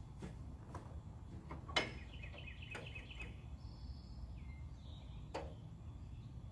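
Faint outdoor background with birds chirping, and a few light clicks and knocks, the loudest about two seconds in, as a man climbs onto a tractor seat and handles the controls. The engine is not yet running.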